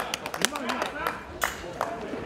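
Scattered hand claps from spectators, irregular and sharp, over faint background voices.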